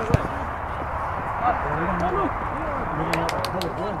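Players and spectators calling out at a distance over a steady outdoor hiss, with a sharp thump just after the start and a spectator's shout of "Oh, Rick!" at the very end.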